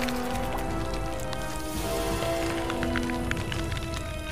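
Film score with long held notes, over a dense crackling sound effect of giant snake eggs cracking open as hatchlings push out.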